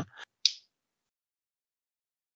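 One short, hissy click about half a second in, then silence.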